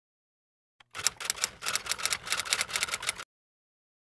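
Typewriter keystroke sound effect: a rapid run of clacking keystrokes that starts about a second in and stops after about two seconds.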